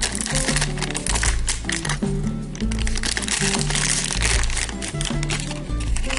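Foil blind bag crinkling as it is torn open by hand and the small plastic figure is pulled out, over background music with a steady bass line.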